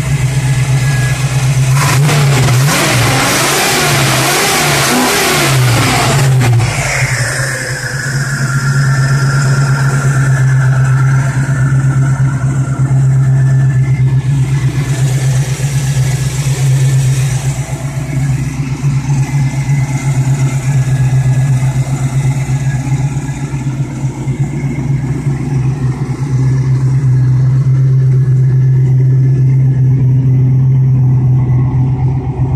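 1979 Pontiac Firebird engine, running on a newly fitted MSD Street Fire distributor: it idles steadily, is revved once about two seconds in, and drops back to idle about four seconds later. A high whine then slowly falls and fades as the idle settles.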